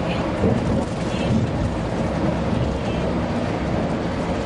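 Steady low rumble of engine and tyres heard from inside a vehicle cruising at highway speed, with faint voices in the background.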